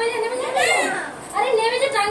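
A young child's high-pitched voice in short bursts, with a brief pause a little past halfway.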